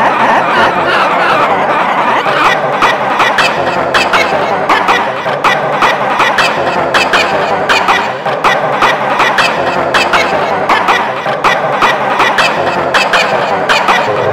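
Several copies of a Mickey Mouse cartoon voice clip played over each other at different pitches, making a dense, gobbling jumble of high cartoon voices. From about two seconds in it is chopped by rapid, repeated sharp stutters.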